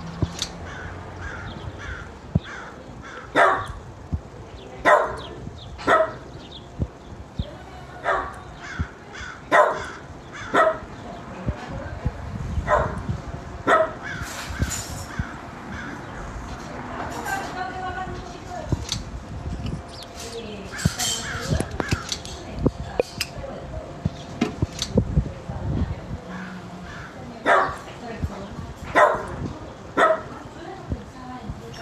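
A dog barking in single barks a second or two apart, with pauses, over a low background rumble.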